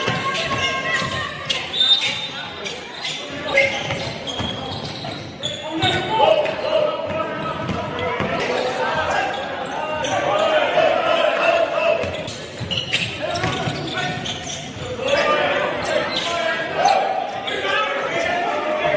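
Live basketball game sound in a large hall: a basketball bouncing on the hardwood court amid sneaker squeaks and indistinct players' voices, with repeated sharp bounces throughout.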